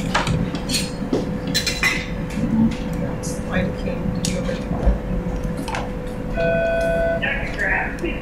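Scattered small clicks and rustles of gloved hands handling a catheter, plastic extension line and three-way stopcock, over a steady faint electronic tone. A short steady beep sounds about six and a half seconds in.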